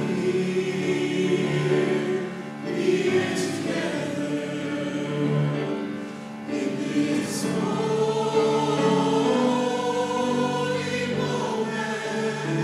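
Mixed-voice choir singing sustained phrases in a resonant church sanctuary, with short breaks between phrases about three and six seconds in.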